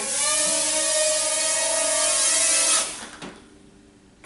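Parrot Rolling Spider minidrone's four small electric rotors whining steadily in a hover, then cutting out about three seconds in as the drone comes down, followed by a light knock. The drone is dropping on a battery reading that has suddenly fallen from 89% to 8%.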